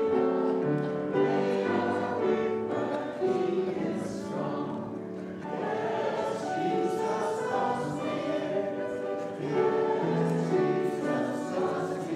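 A choir singing church music in several parts, the chords held and changing about every second.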